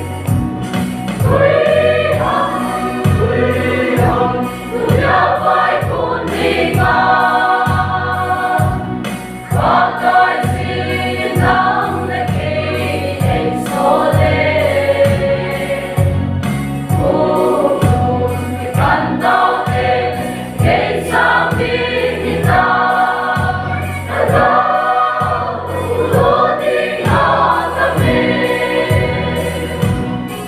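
Mixed choir of men and women singing a gospel song in harmony, over an accompaniment with a steady bass beat.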